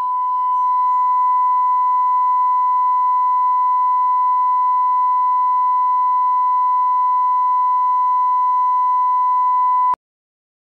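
Colour-bar test tone: a steady, unwavering 1 kHz reference beep held at one pitch for nearly ten seconds, cutting off suddenly near the end.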